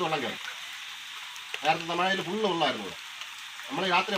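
Steady hiss of water, with a man speaking briefly in the middle.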